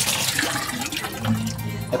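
Water pouring from a pipe into a plastic barrel, with background music underneath.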